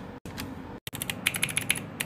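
Mechanical keyboard keys pressed in quick succession: a rapid run of sharp keystroke clicks starting about a second in.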